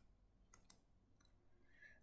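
Near silence: room tone, with two faint short clicks a little over half a second in.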